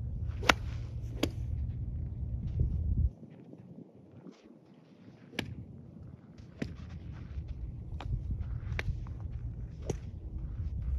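Sharp cracks of iron golf clubs striking balls at a driving range, about seven of them scattered at uneven intervals, the loudest about half a second in. A low rumble runs underneath and stops suddenly about three seconds in.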